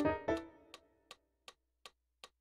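Digital piano chords die away in the first half second, leaving a metronome clicking alone at a steady beat of about 160 a minute.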